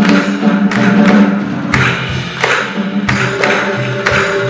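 Live ensemble music: cello holding low notes under quick, irregular strokes from a darbuka and a drum kit.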